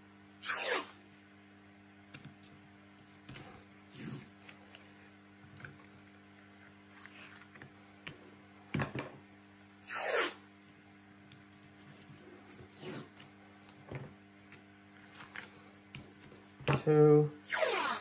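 Black adhesive tape pulled off its roll in a few short bursts, the longest and loudest near the end, and pressed down onto the greyboard joints by hand. A faint steady hum runs underneath.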